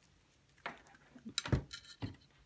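Handling noise of a craft fuse tool and a plastic ruler on a glass cutting mat: a few light knocks, one about two-thirds of a second in and two close together near the end, as the tool is brought down to the ruler's edge.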